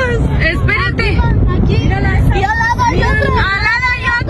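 People's voices talking, over a steady low rumble.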